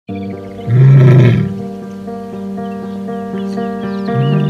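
A lioness gives one loud low call, a little under a second long, about three-quarters of a second in, over background music with steady held notes.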